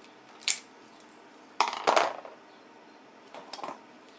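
Small metal tools handled on a workbench as a soldering iron is picked up: a sharp click about half a second in, a louder clatter in the middle, and fainter knocks near the end.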